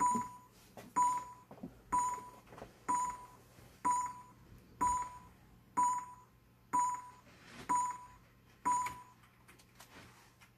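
A short ringing beep with a sharp start, repeating about once a second, ten times, then stopping near the end. It is the sound effect of the Amiga Juggler animation, one beep per juggling cycle, played from the computer.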